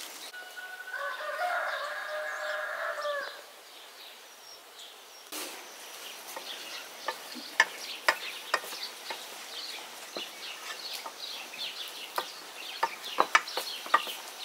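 A rooster crowing once, one long call of about two and a half seconds near the start. Later comes an irregular run of sharp clicks and taps.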